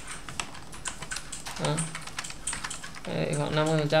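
Computer keyboard keys being typed in quick, irregular clicks while values are entered in a software dialog. A short hum of voice comes about a second and a half in, and speech starts near the end.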